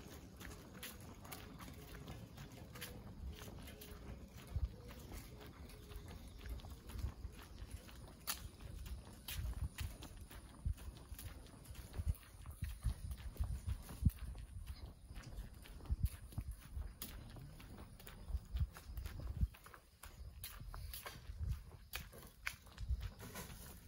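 Footsteps of someone walking on an asphalt street at an even pace, heard as regular low thumps close by.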